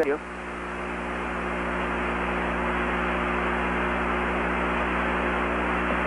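Steady hiss of an open radio communications channel between transmissions, slowly growing louder, with a steady low mains hum beneath it.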